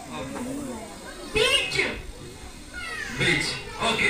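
Children's high-pitched voices calling out in sliding cries, in two loud bursts, one about a second and a half in and one near the end, over a murmur of pupils.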